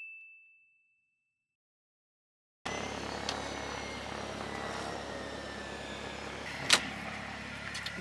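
A bright chime sound effect rings and fades out, then the sound cuts to dead silence for about two seconds. Steady outdoor background noise with a low hum follows, broken by a small click and, near the end, one sharp, loud click.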